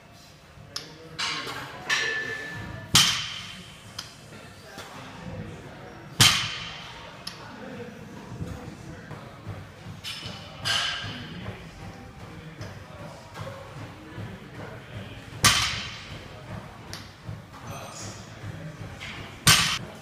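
Barbell loaded with rubber bumper plates set down on a wooden lifting platform between deadlift reps: four loud thuds with a brief metallic clank of bar and plates, and lighter knocks between them.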